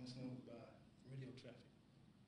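Faint male speech: a witness testifying into a courtroom microphone, in short phrases with pauses.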